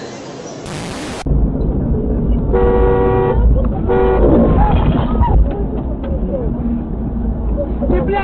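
A vehicle horn honks twice over a loud low rumble: a held toot about two and a half seconds in and a shorter one about a second later.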